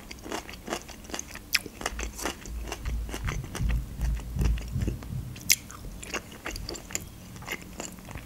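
Close-up chewing of pan-fried pelmeni, with many small wet mouth clicks and a low chewing rumble in the middle seconds.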